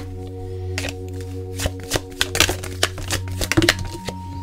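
Soft background music of steady held notes, over a scatter of sharp clicks and slaps from tarot cards being handled and laid down.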